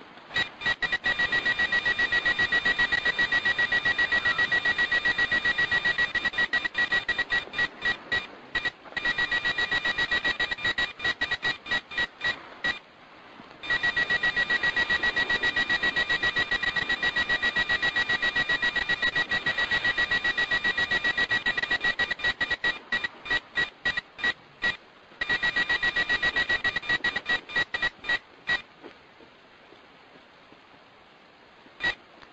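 Radar detectors giving a high electronic alert beep in fast, even trains. The beeping breaks into spaced beeps and short pauses a few times and stops shortly before the end. The recordist takes these alerts for anomalous signals from craft in the sky.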